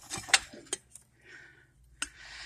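Porcelain tea set pieces clinking lightly as they are handled and lifted off their tray on a glass shelf: two short clicks in the first second, then a faint rustle.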